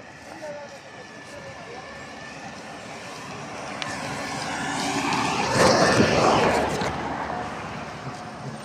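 A passing vehicle: it grows louder, is loudest about six seconds in, then fades.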